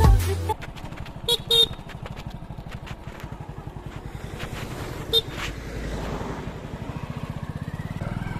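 Motorcycle engine running while riding, a steady fast low pulsing, with a brief loud rumble at the very start. Short horn beeps sound twice about a second and a half in and once more about five seconds in.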